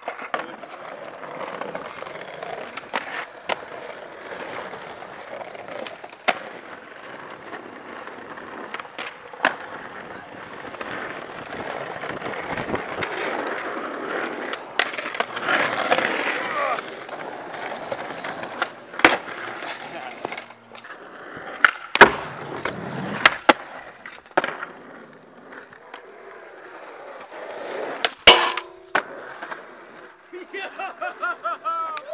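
Skateboard wheels rolling over pavement, with repeated sharp clacks of the board popping and landing; the loudest hard impacts come about two-thirds of the way through and again near the end.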